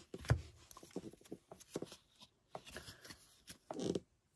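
Baseball trading cards being slid and flicked one behind another in the hands: a run of short, irregular papery clicks and rustles, the sharpest just after the start.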